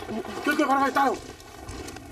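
A person calling out in a raised voice for about a second, without clear words, followed by a faint low rumble.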